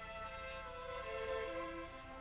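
Orchestral film score: slow held notes stepping downward in pitch.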